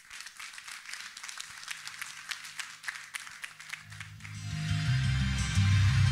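Light applause from the audience, heard as scattered hand claps. About four seconds in, the music of a video's soundtrack swells in under it with a deep bass and grows louder.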